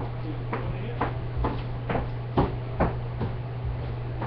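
A series of sharp clicks, about two a second and irregularly spaced, the loudest about two and a half seconds in, over a steady low hum.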